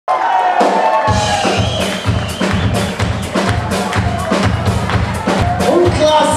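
Samba-reggae band playing live: a melodic line sounds alone for about the first second, then deep drums come in with a steady beat under the band.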